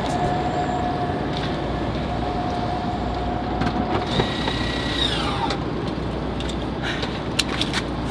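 Steady outdoor traffic noise with a low rumble. About four seconds in, a vehicle passes and its whine drops in pitch as it goes by.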